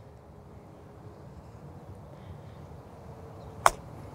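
An iron clubface striking a golf ball on a short chip shot: one sharp click near the end, over faint outdoor background.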